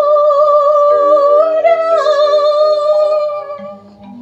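A woman's voice holding one long sung note with vibrato through a microphone, over a karaoke backing track with a soft mallet-like accompaniment. The note fades out near the end.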